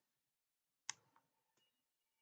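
A single short, sharp click about a second in, made while the on-screen slide is being marked up; otherwise near silence.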